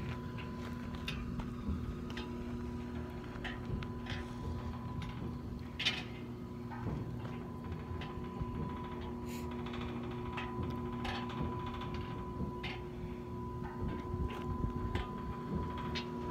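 Oil well pumping unit (pumpjack) running: a steady mechanical hum with a low rumble underneath and occasional faint clicks and creaks.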